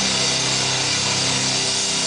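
Live heavy rock band playing loud: heavily distorted electric guitars sustaining a steady, harsh chord over a constant wash of drums and cymbals.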